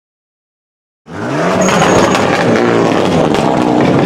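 Opel Kadett GSi rally car's engine running and being revved, its pitch rising and falling. It cuts in suddenly about a second in.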